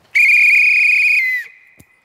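A coach's whistle blown in one loud blast of a little over a second, with a trilling flutter, dipping in pitch as it ends.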